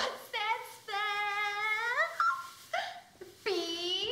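A woman's voice chanting a cheer in a series of high, drawn-out calls, the longest held for about a second, with short gaps between.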